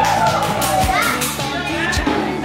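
Pop song with vocals: a singer holds a long note for about the first second, then the melody moves on over a steady bass line, with drum hits about a second apart.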